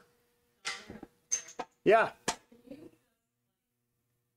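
Brief, quiet speech: a short "yeah" and a few murmured words, with silent gaps between them.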